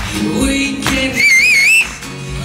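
Live acoustic guitar music over a steady beat, with no singing for a moment. A little over a second in, a loud, wavering high whistle cuts in for under a second and stops.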